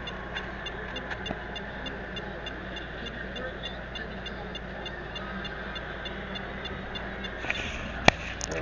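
Steady low electrical hum and hiss with a faint, evenly repeating high tick, about five a second. A brief rustle of handling comes near the end.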